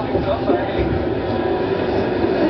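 Meiringen-Innertkirchen-Bahn railcar running along the track, heard from inside: a steady running noise of wheels on rail and motor, with indistinct voices mixed in.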